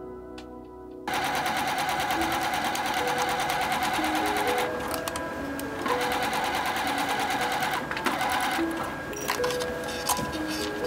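Bernette B37 computerized sewing machine stitching a seam at speed, starting suddenly about a second in and stopping twice for a moment, near the middle and near the end. Soft background music plays under it.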